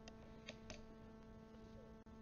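Near silence: a faint steady hum of room tone, with two faint clicks a little past half a second in.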